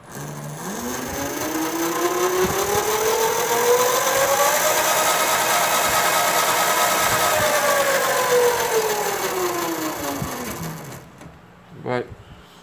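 Electric hub motor of a small 36-volt e-bike, spun up under throttle: a whine rising in pitch over about four seconds, held steady, then falling as the motor runs down and stops about a second before the end. The motor still runs after the failed extra-battery test.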